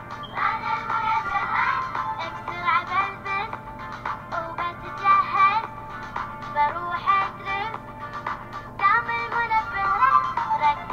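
A song playing, with a high-pitched sung voice whose pitch bends and wavers over a steady accompaniment.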